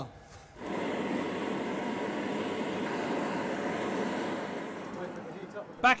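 Glass furnace burners running: a steady rushing noise that starts abruptly under a second in and fades near the end, while a split glass cylinder is reheated until it is pliable.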